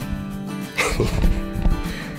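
A dog giving a couple of short barks about a second in, over background music.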